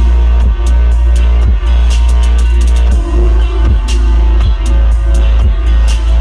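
Live band music played loud through a PA: a heavy sustained bass under a steady drum beat, with electric guitar.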